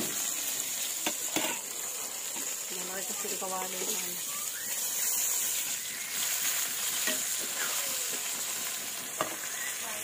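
Fish frying in oil in a small pan on a gas stove, a steady sizzle, with a few sharp clicks of a ladle against the pan.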